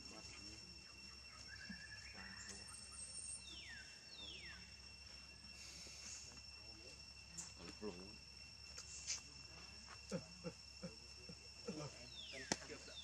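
Faint outdoor ambience carried by a steady, high insect trill. About three to four seconds in come two quick whistles, each falling in pitch. In the second half there are faint low voice-like sounds and a few soft clicks.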